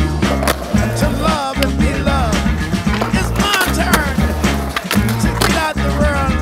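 Background music with a steady beat and bass line, over skateboard sounds: urethane wheels rolling on concrete and the board's pop and landing clacks.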